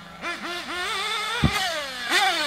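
Small nitro engines of 1/8-scale RC buggies revving up and down in pitch over a steady lower engine note, with a sharp knock about one and a half seconds in.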